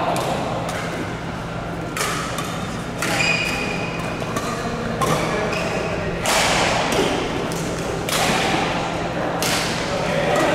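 Badminton rally: rackets striking a shuttlecock, about seven sharp hits at irregular intervals a second or two apart.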